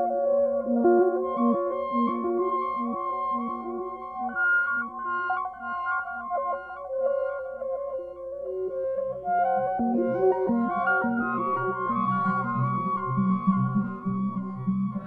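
Electronic music: many layered synthesized pulsing tones sounding one sustained chord, each pulse at a different tempo so they phase against one another. Lower pulsing tones come in about two-thirds of the way through.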